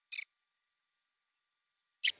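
A single brief, sharp high-pitched click near the start, then dead silence.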